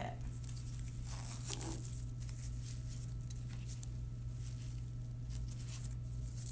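Faint rustling and scratching of a TLSO back brace's straps being tugged and adjusted, over a steady low hum.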